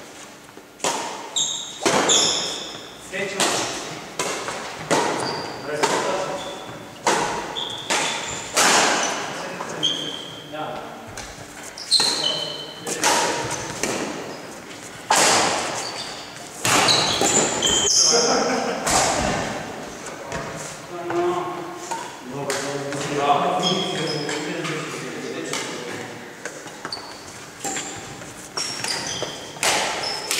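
Doubles badminton rallies in a large, echoing sports hall: sharp racket strikes on the shuttlecock about every second or two, with short high squeaks of sneakers on the wooden floor between them. Players' voices call out over the play.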